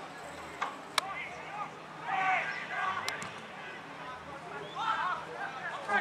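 Distant voices calling out across an open football ground, with a few sharp knocks, one about a second in and another near the middle.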